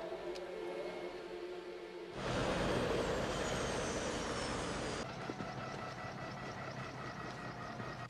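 Soft held music tones, then, about two seconds in, a helicopter comes in suddenly: a dense rush of rotor noise with a fast low pulsing and a high turbine whine that slowly falls in pitch. About five seconds in it drops back to a quieter steady rush.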